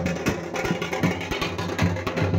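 Music with a percussion beat of regular drum strikes over sustained low notes.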